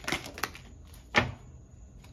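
Tarot cards being handled and laid on a table: two light clicks in the first half-second, then one sharp slap of a card a little after a second in.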